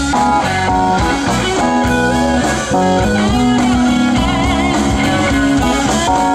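Live blues band with an electric guitar lead playing held, wavering notes over drum kit and electric bass.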